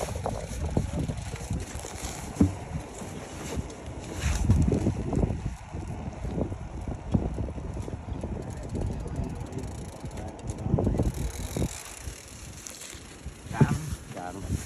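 Wind buffeting the microphone in gusts during a snowstorm, over the mechanical clicking of a fishing reel being cranked as a hooked fish is reeled in.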